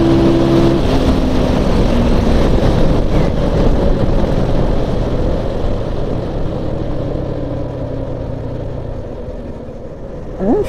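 Motorcycle at high road speed, its engine note plain at first and dropping away about a second in as the throttle closes. Heavy wind rush on the microphone then fades slowly as the bike slows.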